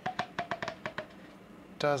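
A large syringe's plunger pushing carbonated, foaming mead through plastic tubing into a graduated cylinder, sputtering in a quick run of sharp clicks and pops that die away about a second in.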